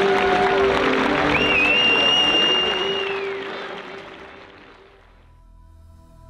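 Stadium crowd applauding and cheering, with a long high whistle about a second in. The crowd sound fades out over a couple of seconds, and soft ambient music begins near the end.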